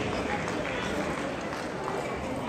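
Busy table tennis hall: background voices from players and officials, with a sharp ball click at the start and a faint one near the end from play at the tables.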